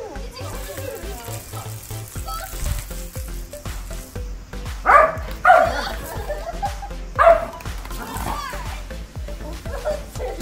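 Doberman barking, three loud barks about five, five and a half and seven seconds in, over background music and voices.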